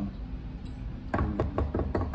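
Hands drumming on a tabletop as a makeshift drum roll: a fast, uneven run of knocks starting about a second in.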